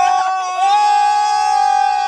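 A woman's long, high-pitched shriek, held at a steady pitch from about half a second in.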